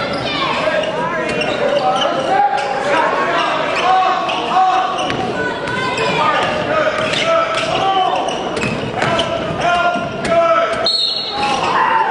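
A basketball dribbled on a hardwood gym floor, with short repeated bounces. Players and spectators shout and talk over it, with no clear words.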